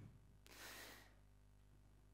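Near silence, with one faint breath of about half a second close to a headset microphone, about half a second in.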